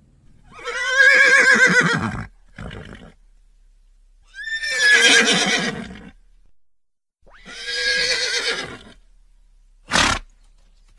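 A horse whinnying three times. Each call lasts about a second and a half and has a quavering pitch.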